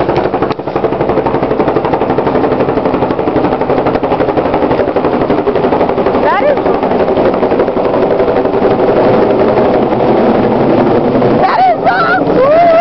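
Helicopter flying overhead, its main rotor chopping in a fast, even beat over a steady engine whine, growing a little louder in the second half.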